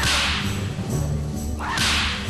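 Two swishing whoosh sound effects, one at the start and one near the end, over background music.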